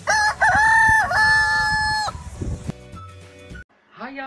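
A rooster crowing once, a full cock-a-doodle-doo of about two seconds with a short break about a second in.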